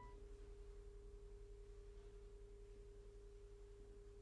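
Faint electronic sine tone held alone at one steady pitch, just under 500 Hz, against near silence.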